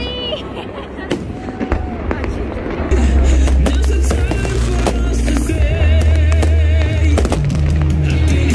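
Fireworks display: aerial shells bursting overhead with many sharp bangs and crackles in quick succession, growing louder about three seconds in.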